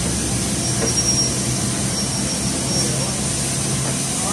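Car-wash vacuum cleaner running steadily while its hose cleans the inside of a car's boot, a continuous hum with a faint high whine.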